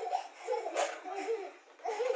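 A young child laughing in several short, high-pitched bursts.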